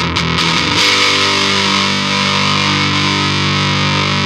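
Electric guitar played through an overdrive pedal, distorted. A few quick strums, then a chord struck about a second in and left to ring for about three seconds.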